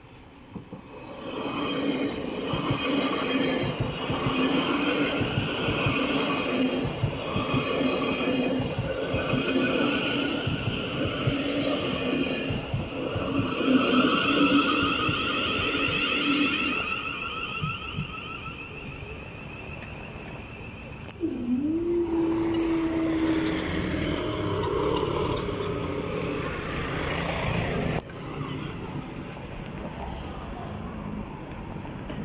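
Thameslink Class 700 electric multiple unit passing close by over the level crossing: wheel-on-rail noise with a high, wavering whine, loudest as the carriages go past and then fading away. After the train clears, a steady tone starts about two-thirds of the way through with other noise, and it drops off near the end.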